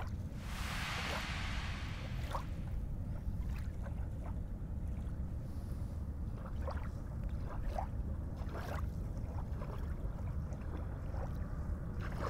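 Wind rumbling steadily on the microphone over open bay water, with light lapping of small ripples and scattered faint short sounds. A brief hissing gust comes in the first two seconds.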